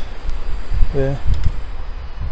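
Low rumbling wind noise on the microphone, with a single spoken word about a second in.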